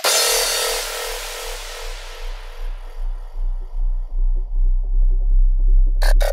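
Experimental darkpsy electronic track at 160 BPM in a breakdown: a bright noise wash starts it and fades over about three seconds over a deep, swelling bass and quick low pulses. The full pulsing beat comes back in at the end.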